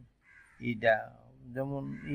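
A man talking, starting about half a second in after a brief near-silent pause.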